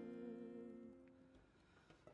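A slow folk song's last held note, a singing voice over a steady accordion chord, dies away in the first second or so and leaves near silence.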